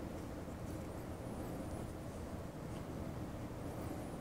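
Faint steady low background hum, with a few faint high warbling chirps about a second in and again near the end.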